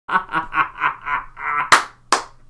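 A man laughing hard in rapid, even "ah-ah-ah" bursts, about four a second, then a single sharp smack near the end.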